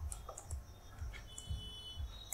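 Faint computer keyboard keystrokes and mouse clicks, a handful of scattered single clicks.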